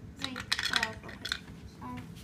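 Hard plastic toy parts clicking and clattering as they are handled and knocked together, with a cluster of short sharp knocks in the first second or so.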